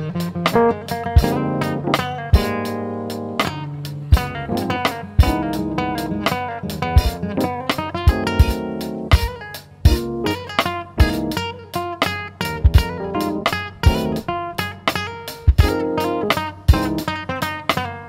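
Live band playing an instrumental passage without vocals: acoustic guitar picking over a steady drum beat and bass.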